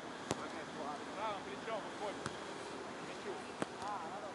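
A beach volleyball being struck by hands: three sharp slaps spread over the few seconds, over a steady outdoor haze, with distant voices calling in between.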